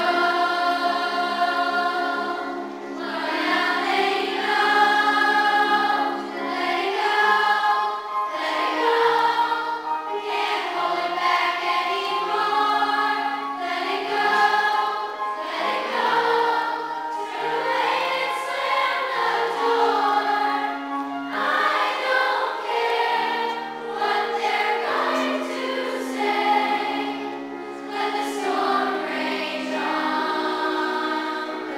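Children's choir singing a song in sustained phrases of a few seconds each, with brief dips between phrases.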